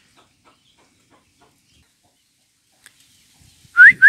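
Near silence with a few faint ticks, then near the end a loud whistled call to the chickens begins: a rising note followed by quick short notes at a steady pitch.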